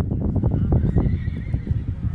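A horse whinnying: one long, high call that rises and falls, heard over a loud low rumble and buffeting on the microphone.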